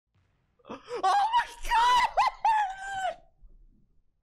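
A man's high-pitched falsetto shriek mixed with laughter, an excited outburst lasting about two and a half seconds, starting about half a second in and trailing off near the end.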